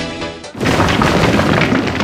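A sudden boom sound effect about half a second in, running on into a dense crackling rumble of breaking, crumbling stone debris.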